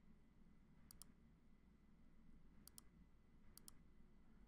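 Near silence, broken by three faint pairs of computer mouse clicks: about a second in, just before three seconds, and near the end.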